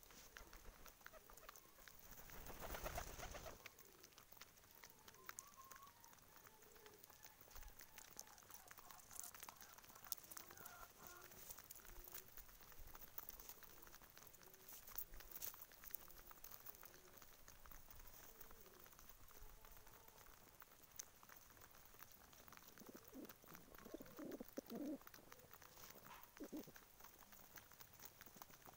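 Domestic pigeons cooing faintly and low while they feed, with scattered light clicks of pecking at grain on the ground; the cooing is strongest near the end. A brief whoosh of noise about two seconds in.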